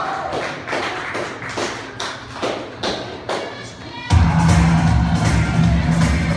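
Live band in a club: a run of sharp drum hits, about two or three a second, then about four seconds in the full band comes in loud with a heavy low end.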